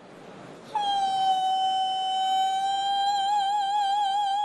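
Woman singing on stage: after a short pause she holds one long high note, steady at first and then with vibrato about three seconds in.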